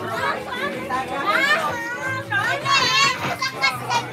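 Children playing and shouting, their voices rising to high-pitched squeals about a second and a half in and again around three seconds.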